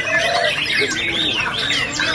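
Several caged white-rumped shamas (murai batu) singing at once: a dense tangle of quick whistled phrases and rising-and-falling notes, with the voices of a crowd underneath.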